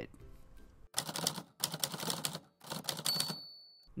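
Rapid clicking in four short bursts, then a single high steady ding about three seconds in.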